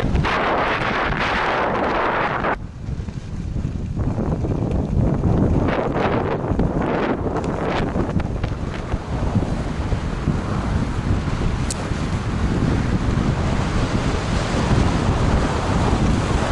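Wind rumbling on the camera's microphone during a fast downhill ski run, with surges of hiss from skis scraping and carving across packed groomed snow in the turns.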